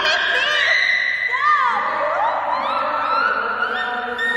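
Excited voices shouting and whooping, with long drawn-out cries rising and falling in pitch, over background music.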